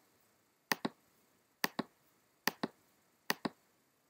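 Computer mouse button clicked four times at a steady pace, about one click a second, each a quick double tick of press and release. Each click places an anchor point with Illustrator's Pen tool.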